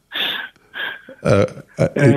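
A man's voice making breathy, wordless sounds and a short voiced syllable between phrases of conversation.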